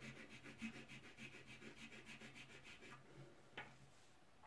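Faint, quick back-and-forth scratching of a soft pastel stick rubbed onto paper, about six strokes a second, filling in a swatch of colour; the strokes stop about three seconds in.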